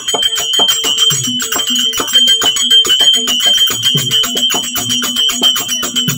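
Therukoothu (Tamil street-theatre) ensemble playing: fast, even strokes of small hand cymbals or bells, with drum beats and short repeated harmonium notes underneath.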